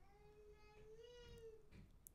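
Near silence with one faint, distant drawn-out call in the background, about a second and a half long, rising slightly in pitch and then falling away.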